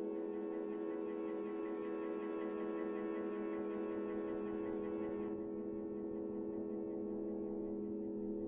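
Steady ambient drone of several held tones with no beat or melody, the opening soundtrack of the project film. The faint high hiss over it drops away about five seconds in.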